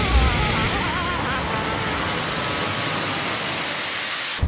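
A steady rushing noise of air and snow during a fall, with a cartoon reindeer's wavering yell over the first second and a half that fades away as it falls.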